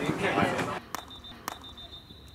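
Indistinct voices of spectators at a field hockey match, cut off abruptly after under a second; then two sharp clicks about half a second apart over a faint steady high whine.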